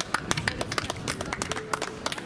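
A small audience clapping: several people's scattered hand claps, irregular and fairly quick.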